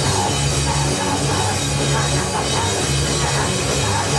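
Hardcore punk band playing live and loud: electric guitar and drum kit in a dense, unbroken wall of sound.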